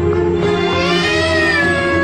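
A baby crying, one long wail starting about half a second in, over steady background music.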